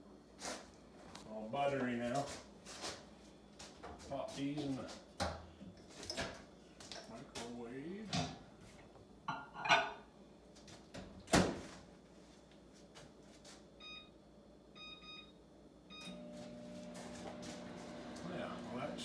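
Over-the-range microwave oven: two sharp clacks of its door about ten and eleven seconds in, a run of short keypad beeps a few seconds later, then the oven starts up with a steady low hum as it heats a bowl of butter to melt it.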